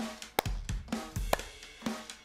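Drum-kit backing music with a steady beat of about two strokes a second, with hand claps in time with the beat.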